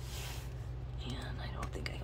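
A short rustle as a hand works the clasp of an old leather photo album to open it one-handed, followed about a second in by faint muttering, over a steady low hum.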